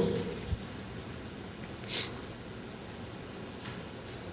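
A pause in a preacher's amplified speech: steady low room noise through the microphone, with a faint knock about half a second in and a short breath at the microphone about two seconds in.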